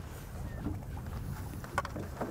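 Low, steady rumble of a small fishing boat on the water, with a short splash near the end as a hooked fish thrashes at the surface beside the boat.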